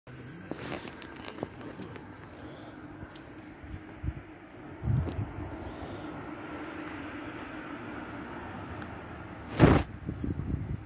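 Trackside outdoor ambience: a low, steady hum with faint background noise. A thump comes about five seconds in, and a short, loud thump comes just before the end.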